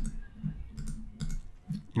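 A few sharp computer mouse clicks as a Photoshop layer's visibility is toggled off and on.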